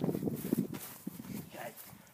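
Footsteps on the move: a quick, irregular run of thuds that thins out about a second and a half in, when a voice says "okay".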